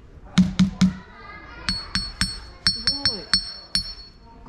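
A small hammer tapping stones: three duller knocks on an ordinary rounded stone, then about nine quicker taps on a slab of kankan stone, each ringing on with a clear, high, metallic tone.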